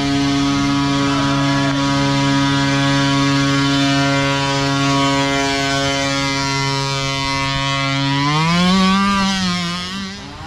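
Micro ATV's small engine held at a steady high rev while the quad, stuck on a hill climb, is pushed up the slope. Near the end the revs rise, then swing up and down.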